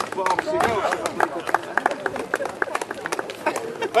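Scattered hand clapping from a small outdoor audience: uneven sharp claps, several a second, with a few voices mixed in.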